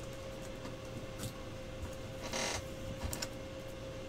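Trading cards being handled on a desk: a few faint clicks and one brief rustle of cards sliding a little past halfway, over a steady faint hum.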